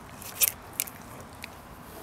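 Siberian huskies eating a raw egg off a table, with crisp crunches of eggshell between their teeth: one sharp crunch about half a second in, then a couple of lighter ones.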